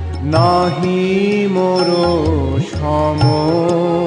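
Bengali devotional kirtan music: a held melody line that glides and wavers in pitch over a steady drone, with no words sung.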